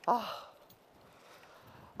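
A man's groaning 'ah', falling in pitch and lasting about half a second at the very start, followed by faint background.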